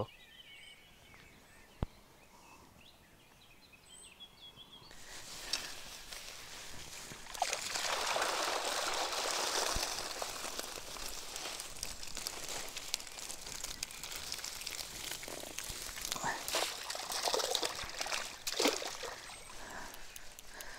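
A fishing keep net being drawn out of a river, with water pouring and sloshing out of the mesh. It starts about five seconds in and is heaviest a few seconds later, with scattered splashes near the end.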